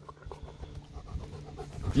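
German Shepherd dog panting with its tongue out after running for a tennis ball.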